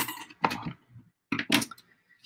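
A few short crackles and clicks as hands work a roll of red-liner double-sided tape and stiff placemat pieces on a table.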